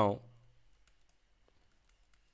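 The tail of a spoken word, then faint, scattered clicks and taps from writing on screen with a digital pen.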